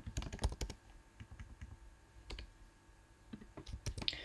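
Computer keyboard typing: a quick flurry of keystrokes in the first second, then a few scattered keys, and another short run near the end.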